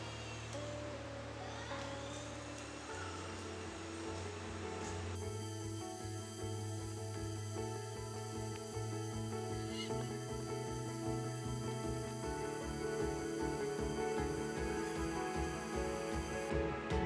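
Background music: sustained chords over a bass line that changes every few seconds, with a fuller texture and a steady low pulse coming in about five seconds in.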